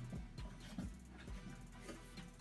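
Faint background music with a steady beat, about two beats a second.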